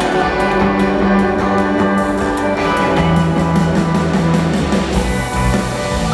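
Live rock band playing an instrumental passage at concert volume, with electric guitars and keyboards over held bass notes.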